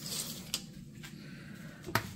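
Faint handling noise of a tape measure being extended and laid across a rubber cargo liner, with a light click about half a second in and another near the end.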